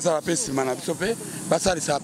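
Speech only: a man talking animatedly into a handheld microphone.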